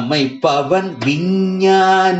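A man singing a Carnatic-style Tamil devotional song in raga Shanmukhapriya, with a brief break about half a second in and then one long held note.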